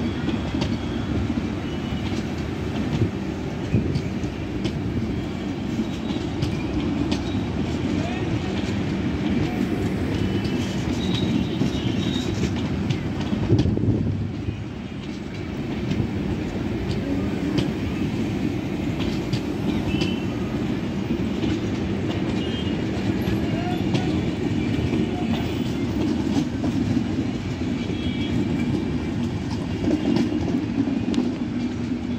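LHB passenger coaches of a Shatabdi Express rolling past close by on a curve: a continuous steady rumble of wheels on rail with frequent short clicks as the wheels cross rail joints.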